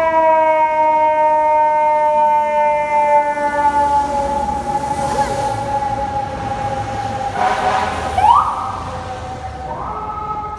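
Emergency vehicle siren wailing, its pitch slowly falling, then sweeping sharply back up twice near the end. There is a louder, rougher burst about eight seconds in.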